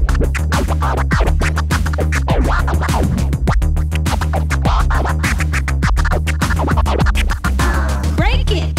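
Hip hop music with a steady, heavy beat and scratching: short back-and-forth pitch sweeps cut over the track.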